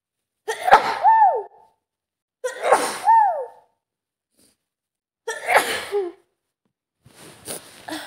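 A woman with a cold sneezing three times, each sneeze a sharp burst ending in a falling voiced 'choo', two to three seconds apart. Quieter breathy sounds follow near the end.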